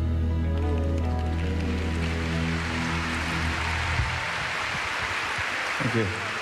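A live band holds the closing chord of a song, which dies away about four seconds in, while audience applause swells underneath and carries on.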